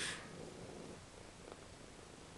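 Domestic cat purring steadily while being stroked, a faint low rumble that sounds like a very old computer. A short breathy puff right at the start.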